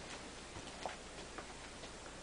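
Quiet room hiss with a few faint, irregular soft clicks as a man moves back from the camera.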